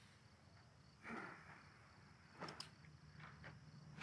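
Near silence: faint crickets chirring steadily, with a soft short sound about a second in and a few faint ticks later.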